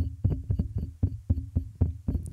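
A fast series of light knocks or taps, about five a second, some with a brief low ring after them.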